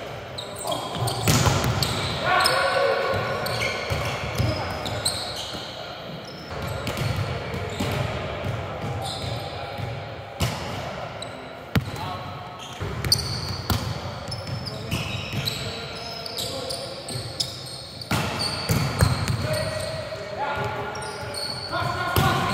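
Indoor volleyball rallies: sharp smacks of hands on the ball and the ball hitting the hardwood floor, echoing around a large gym, with players shouting and calling between hits.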